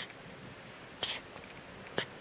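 Newborn baby breastfeeding: short sucking-and-swallowing sounds, about one a second.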